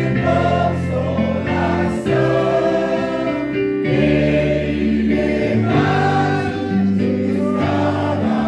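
A group of men and women singing a Portuguese gospel hymn together, over an electric bass guitar playing held low notes through an amplifier.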